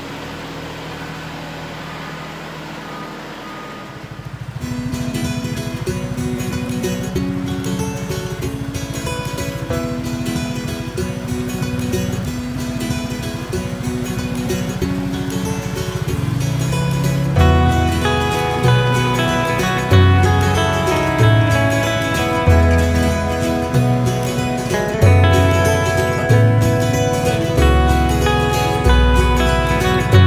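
The Kubota L3301 tractor's diesel engine runs steadily for about the first four seconds. Guitar-led country-style background music then takes over, and a heavy bass line comes in about midway.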